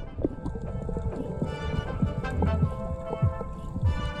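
Background music: held tones over a beat of low percussion hits.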